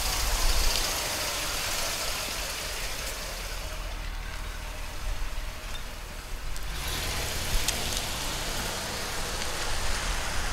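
A 1979 Lincoln Continental Town Car with its V8 engine running drives past at low speed. It is heard under a steady hiss and rumble of wind on the microphone, and the rumble grows stronger a few seconds before the end.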